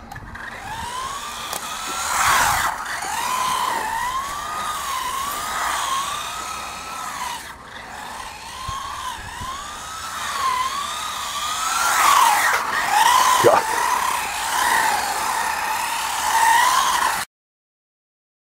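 Radio-controlled Huan Qi mini buggy driving, its small electric motor whining up and down in pitch as the throttle is worked, about once a second. It gets louder about two seconds in and again from about twelve to fourteen seconds, and the sound cuts off suddenly near the end.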